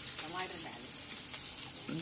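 Chopped onion and garlic sizzling steadily in hot oil in a steel kadai on a gas stove, with a short click about half a second in.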